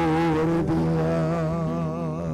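End of a sung Mass entrance hymn: a long held note with vibrato over a sustained accompanying chord, starting to fade near the end.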